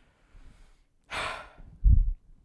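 A person's sigh-like breath into a microphone about a second in, followed near the end by a short, louder low thump.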